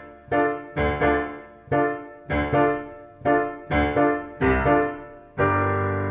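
Digital piano playing chords from the D minor, G minor, B-flat major, A major progression hands together. The right hand falls on the beats and the left hand is offset against it, so the chords come in an uneven, syncopated rhythm, a few per second. The last chord, near the end, is held and rings on.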